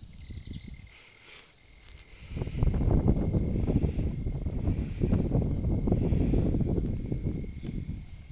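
Loud, fluttering low rumble of noise on the microphone, starting about two seconds in and fading near the end, over a faint steady high tone.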